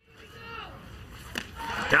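Faint ballpark crowd and voices, then one sharp pop about one and a half seconds in: a fastball smacking into the catcher's mitt as the batter swings and misses for strike three.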